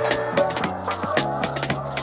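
Deep house music: a steady beat with hi-hat-like ticks about four times a second, over a moving bass line and sustained synth chords.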